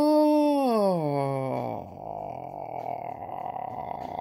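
A man's long, drawn-out "ohhh" of excitement, held high and then sliding down in pitch over about two seconds, trailing off into a quieter, rougher sound.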